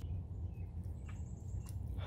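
Quiet outdoor ambience: a low steady rumble with a faint, thin high-pitched tone lasting well under a second, about a second in.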